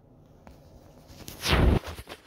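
Handling noise from a phone being picked up and turned around: faint room tone, then about one and a half seconds in a loud, brief rubbing thump on the phone's microphone that sweeps from high to low.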